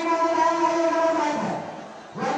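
A long, steady pitched tone, horn-like, held for about a second and a half and then falling away in pitch and level near the end.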